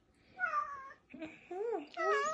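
Domestic cat meowing twice: a falling meow about half a second in, then a longer meow that rises and falls, with another starting right at the end.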